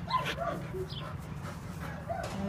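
A dog giving short yips and whines, the loudest just after the start and more about a second in.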